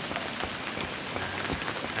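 Steady moderate rain, heard as an even hiss with many separate drop ticks.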